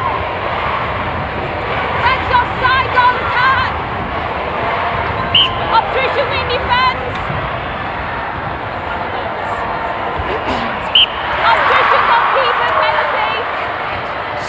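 Arena crowd noise during netball play, with voices from the crowd and short squeaky sounds from the court, swelling briefly about two-thirds of the way through.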